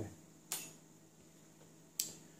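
Two sharp clicks of small hand tools being handled or set down, one about half a second in and one at the end, with faint room tone between.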